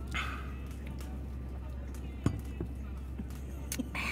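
Faint background music and distant voices over a steady low hum, with two light clicks, one about halfway through and one near the end.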